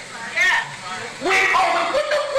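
A man speaking emotionally into a microphone in two short, strained phrases, with brief pauses between them.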